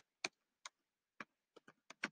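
Faint keystrokes on a computer keyboard as a word is typed: about seven separate clicks at an uneven pace.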